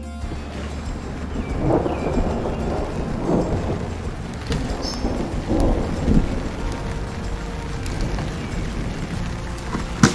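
Rain falling with rolling thunder, the rumble swelling several times between about two and six seconds in.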